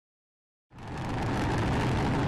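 Rocket engine of a Tronador-program test vehicle firing at liftoff, heard from a distance: a steady, deep rushing noise that comes in suddenly about two-thirds of a second in and swells to full strength within half a second.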